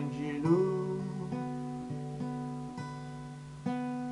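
Acoustic guitar played in regular, evenly spaced chords, with a man's held sung note at the start that ends about a second in, leaving the guitar alone.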